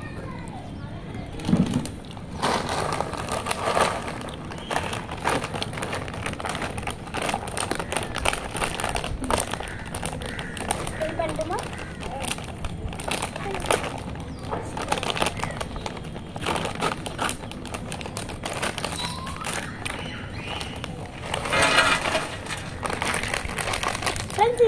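Crinkling of a metallized plastic chip packet being handled and opened, with many small crackles. A little before the end comes a louder burst as potato chips are poured from the bag onto a steel plate.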